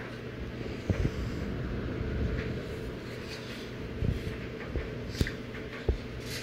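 AC Infinity AirPlate S7 dual 120 mm cabinet cooling fans running steadily on their high speed setting: a steady hum under even air noise. A few light knocks come from the fan panel being handled, about a second in and again near four and five seconds.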